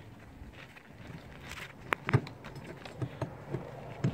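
Old roofing felt paper rustling and crackling as it is folded up by hand on a plywood roof deck, with two sharp clicks about two seconds in.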